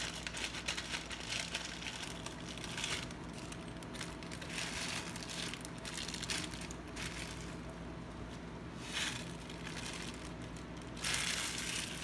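Plastic Maruchan ramen packet crinkling in irregular bursts as it is handled and torn open, over a steady low hum.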